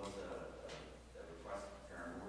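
Faint, distant-sounding talk that is too quiet for the words to be made out, in continuous phrases over a steady low hum.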